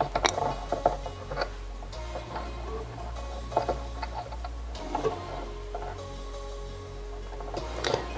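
Scattered light clicks and ticks of fine stainless steel wire being handled and secured around the hook of a dubbing-brush spinning machine, over soft background music.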